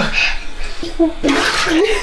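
Rubber toilet plunger being pumped in a clogged toilet bowl, water splashing and gurgling, loudest a little after a second in.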